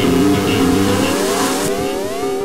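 A car engine revving, its pitch rising in repeated sweeps from about a second in, over steady background music.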